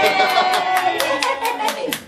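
Hand clapping, about five claps a second, under a long held cheering voice; both die away near the end.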